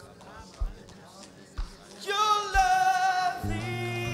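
Worship music under prayer: a soft low drum beat about once a second. About halfway a long held sung or keyboard note comes in, and a deep bass note joins it near the end.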